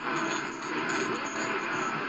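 Medium-wave AM reception from the C.Crane CC Radio EP Pro's speaker: a weak, distant station's audio buried in steady static hiss while the dial is tuned between stations.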